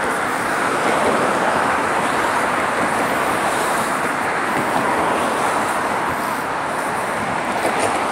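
Steady hiss of road traffic passing on the bridge roadway, an even wash of tyre noise with no single vehicle standing out.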